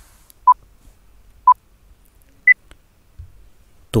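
Countdown timer beeps: two short mid-pitched beeps a second apart, then a higher final beep a second later, marking the end of a five-second answer countdown.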